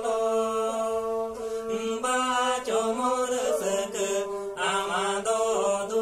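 Two men singing a traditional Santali song while bowing banams, carved wooden Santali folk fiddles, with long held notes under the wavering voices.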